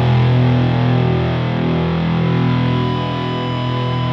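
Doom metal: a heavily distorted electric guitar chord with a low drone underneath, ringing out and slowly fading after a big hit.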